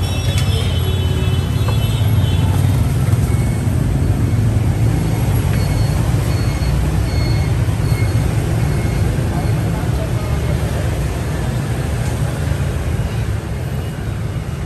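Steady low rumble of motorbike and car traffic on the street, with indistinct voices around the stall.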